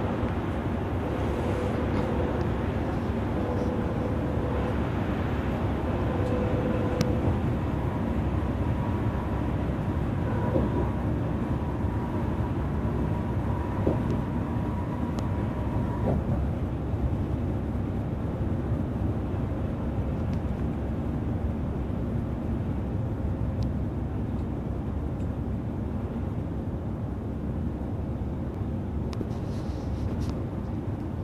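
Steady drone of an express coach cruising at highway speed, heard inside the passenger cabin: engine and tyre-on-road noise. A faint steady whine sits in it and fades out about halfway, with a few light clicks and rattles.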